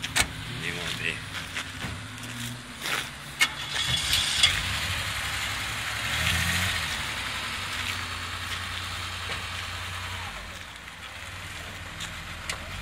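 An old car's engine running at idle, growing louder and fuller from about four seconds in before settling back down near the end.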